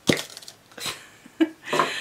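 A makeup brush case being handled and worked open: a sharp click at the start, then a few lighter knocks and rustles.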